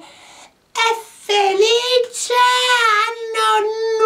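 A high-pitched, child-like voice drawing out long sung or whined syllables, with short breaks about half a second and a second in.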